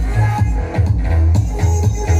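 Loud electronic dance music played through a Philips NX5 tower speaker, with a heavy bass beat pulsing in a steady rhythm.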